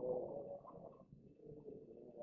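Congregation laughing faintly and muffled, dying away near the end.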